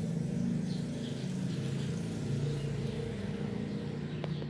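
A steady low engine hum whose pitch drifts slightly.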